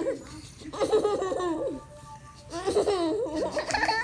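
A baby laughing, in two long bouts of giggling with a short pause between them.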